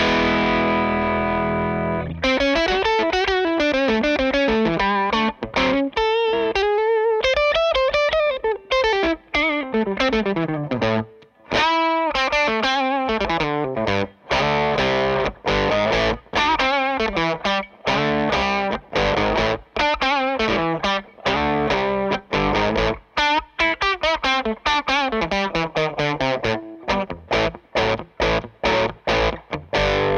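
Electric guitar, a 1958 Gibson Les Paul, played through the Rangemaster-style treble-boost side of a Hello Sailor Free Range pedal into a Victory DP40 amp. A held chord rings for about two seconds, then fast lead lines with string bends run on.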